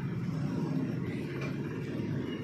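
A steady low rumble of background noise with no distinct events.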